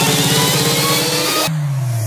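Electronic dance track at the peak of a build-up: a synth rising steadily in pitch over a fast drum roll, which cuts off suddenly about one and a half seconds in, leaving a low tone falling in pitch.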